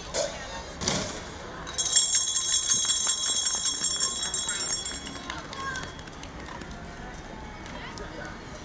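Metal bells ringing: a bright, high chiming of several held tones that starts suddenly about two seconds in and fades away over about three seconds, after two sharp knocks.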